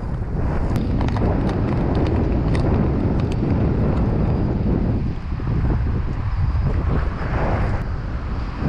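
Wind buffeting the microphone in a loud, uneven rumble, with light crinkles and ticks from a plastic bait bag being handled.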